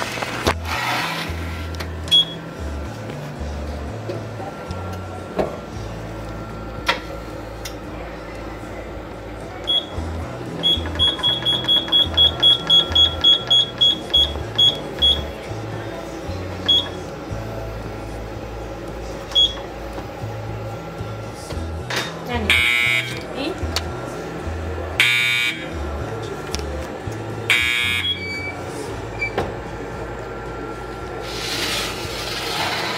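Electric oven's digital control panel beeping as its buttons are pressed: a few single beeps, then a rapid run of about four to five beeps a second as the setting is stepped up, then more single beeps. Near the end come three louder, longer buzzes from the oven. Background music plays throughout.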